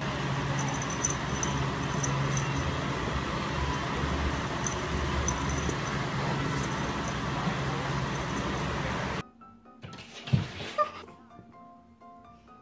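Background music, with a steady noisy layer under it that cuts off abruptly about nine seconds in. The music then goes on more softly as a simple melody, with a single thump shortly after the cut.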